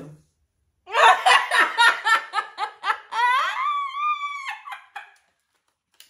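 A woman laughing hard: a loud run of quick laughs, about five a second, that turns about three seconds in into a long, high-pitched squeal, then trails off.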